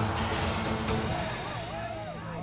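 Dramatic background music with a steady low drone, slowly fading. From about a second in, several voices call out over it.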